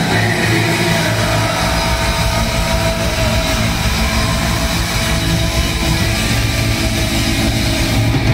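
Punk rock band playing live at full volume: distorted electric guitar, bass guitar and drums, a steady dense wall of sound.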